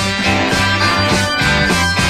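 Early-1970s rock recording playing an instrumental passage: guitar over low bass notes and a steady beat of short drum strokes.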